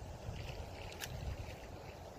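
Wind buffeting the microphone: a low, uneven rumble, with one faint click about a second in.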